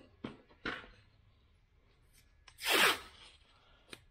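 Painter's tape pulled off the roll in one short rasp about three seconds in, after a couple of light handling clicks.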